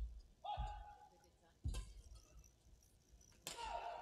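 Badminton rally: two racket strikes on the shuttlecock about 1.7 seconds apart. Shoe squeaks on the court floor come about half a second in and again with the second strike.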